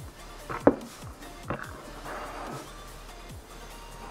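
Quiet background music, with a sharp plastic click about two-thirds of a second in and a few lighter knocks as the paracord bracelet's side-release buckles are unclipped from the wooden bracelet jig.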